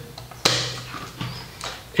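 Clear plastic lid of a portable mini DVD player snapping shut with one sharp click about half a second in. A few fainter clicks follow as the drive starts to spin up the disc.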